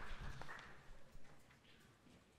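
Audience applause fading out into a few scattered claps.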